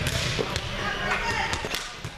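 Volleyballs being spiked and bouncing on a gym floor: several sharp hits and thuds, with players' voices in the background.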